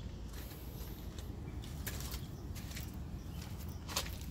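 Outdoor background noise: a low steady rumble, with a few faint clicks and rustles.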